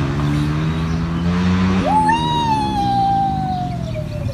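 A child's long, high drawn-out call, like a 'wheee' while riding down a plastic spiral slide. It leaps up in pitch about two seconds in and then slowly falls. A steady low drone lies underneath.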